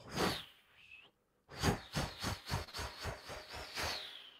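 Imitated bird flight sound acting out the parrot flying away: a short burst, then a run of quick flutter pulses, about four a second, under a high steady whistle that falls in pitch near the end.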